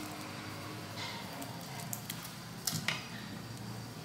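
Faint handling noise of a garlic bulb being pulled apart by hand, with two light clicks a little under three seconds in, over a low steady room hum.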